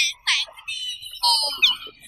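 Several teenage girls laughing and squealing with excitement, in high-pitched overlapping voices.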